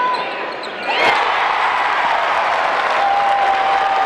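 Basketball arena crowd breaking into a loud, sustained cheer about a second in, as a shot goes up toward the basket, after a moment of court noise.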